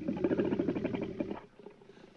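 A werewolf's rough, low growl from a horror film soundtrack, lasting about a second and a half before it stops.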